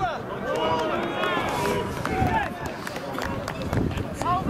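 Several men's voices shouting and calling at a football match, overlapping one another, with a few short knocks among them.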